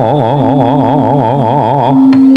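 A dalang's sung suluk: a male voice holding one long note with a wide, even vibrato.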